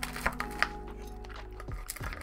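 Background music with sustained notes and a falling sweep near the end. A few sharp clicks in the first second stand out above it.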